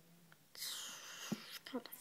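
A person whispering for about a second, with a small click, then starting to speak softly near the end.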